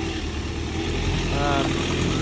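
An engine running steadily nearby, a low even hum, with a short vocal sound about one and a half seconds in.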